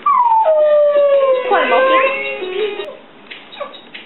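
Alaskan Malamute howling along to a children's music toy: one long howl that starts high and slides down in pitch, then wavers and climbs near the middle before fading out.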